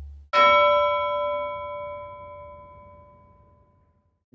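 A single bell strike about a third of a second in, ringing with several clear tones and fading away over about three seconds.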